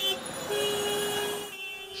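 Street traffic noise with a vehicle horn: one long steady horn blast starts about half a second in, after a brief shorter horn note at the start.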